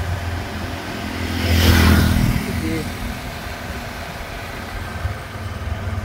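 A road vehicle passing close by, its engine and tyre noise swelling to a peak about two seconds in and then fading. Steady engine rumble from traffic continues underneath.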